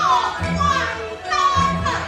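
A Min opera performer's stylized declamation in the traditional vocal style, the high voice sweeping in long falling and rising glides between phrases, over a low, steady accompaniment from the opera band.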